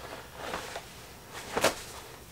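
Faint rustling of a canvas haversack and its strap as the bag is shifted on the back, with one short, sharper sound about one and a half seconds in.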